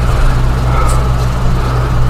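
A steady low hum with an even background hiss, unchanging through a pause in speech.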